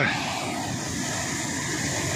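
Sea surf breaking over rocks on the shore: a steady rushing noise.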